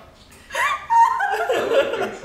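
People laughing and chuckling, starting about half a second in after a brief lull.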